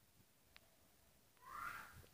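Near silence: room tone, with a tiny click about halfway and a faint, brief high squeak near the end.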